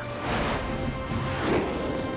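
Film soundtrack music under a dense, noisy wash of battle sound effects.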